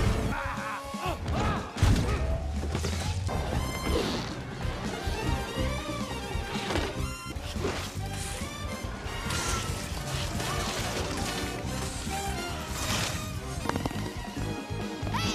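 Action-film soundtrack: music under a run of crashes and smashing impacts, the loudest about two seconds in.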